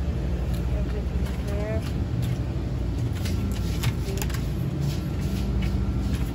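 Shop background noise: a steady low rumble with a brief bit of faint voice about one and a half seconds in and scattered light clicks.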